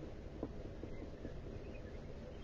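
Quiet room tone with a steady low hum and a few faint light ticks and scrapes from a paintbrush working acrylic paint onto a canvas board.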